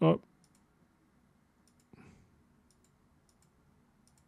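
Faint, scattered clicks of computer keys, a few small taps spread irregularly over the seconds, as playback is skipped ahead.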